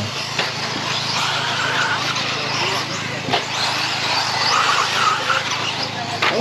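Radio-controlled mini truggies racing on a dirt track, a steady hiss of motors and tyres, with two sharp knocks, one about half a second in and one around the middle.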